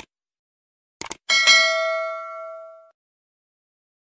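Mouse-click sound effects, two quick clicks about a second in, followed by a bright bell chime that rings out and fades over about a second and a half. It is a subscribe-and-notification-bell sound effect.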